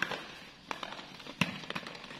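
Hollow plastic ball-pit balls knocking and clattering against each other as they are tossed and handled: a few sharp taps, the loudest about one and a half seconds in.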